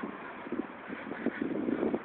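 Wind buffeting a phone's microphone outdoors: an irregular rumbling noise that grows louder in the second second.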